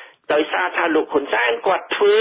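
Speech only: a voice reading Khmer-language radio news, thin and cut off in the highs like a radio broadcast.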